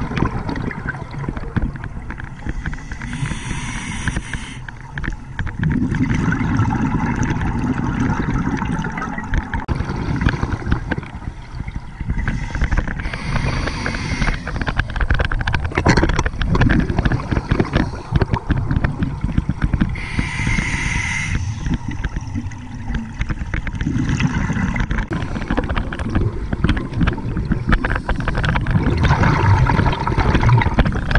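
Scuba regulator breathing heard underwater: three short hisses of breath about seven to ten seconds apart, with rumbling, gurgling exhaled bubbles between them.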